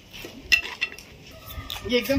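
A few light, sharp clinks about half a second in, over quiet background.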